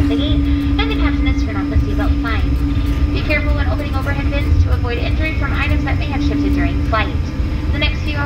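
Low, steady cabin rumble of an Airbus A220-100 rolling on the ground just after landing, spoilers still deployed, with a steady hum that fades about seven seconds in. A voice talks over it throughout.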